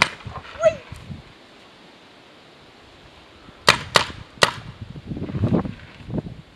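A paintball marker fires three quick shots a little past the middle: sharp pops about a third of a second apart.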